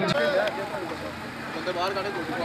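A man's voice talking over steady outdoor crowd noise, slightly quieter than the commentary around it.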